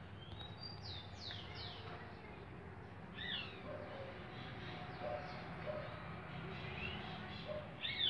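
Faint birdsong: a quick run of high, falling chirps starting about half a second in, a few more around three seconds and again near the end, with faint short lower notes now and then.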